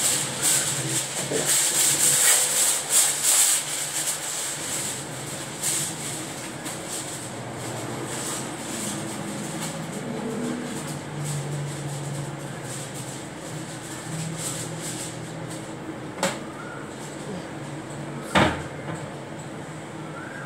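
Aluminium foil being pulled from its box, torn and crinkled, loudest in the first few seconds, followed by quieter handling and two sharp knocks near the end, the second louder.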